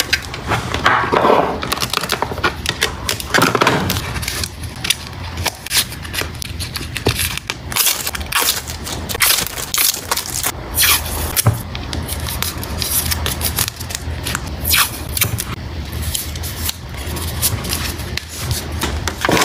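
Plastic photocard sleeves and card holders handled close to the microphone: crinkling, sliding and scraping, with many short sharp clicks and taps.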